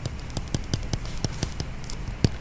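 Stylus tapping and clicking on a tablet screen while handwriting: an irregular run of light clicks, several a second.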